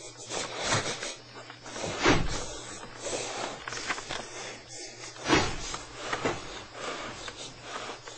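Rustling handling noise from a handheld camera being moved about, with louder bursts about two seconds in and again just past five seconds.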